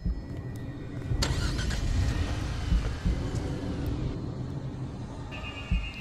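Car engine running with a steady low rumble, a sound effect from the stop-motion film's soundtrack, with a hissing swell in the middle and a steady high tone joining near the end.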